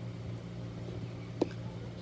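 A single sharp click about a second and a half in, a plastic lid being pressed onto a small container to close it, over a steady low hum.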